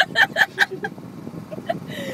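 A woman laughing: a quick run of 'ha' pulses, about five a second, that dies away after about a second.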